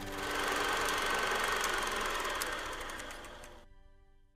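Film projector clattering as it runs, a cinema sound effect, swelling in the first half-second, then fading and cutting off shortly before the end, over the faint tail of music.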